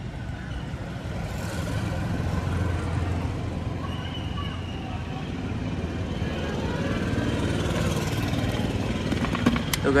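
Steady road traffic rumbling past, while petrol runs from an upturned plastic bottle into a scooter's fuel tank.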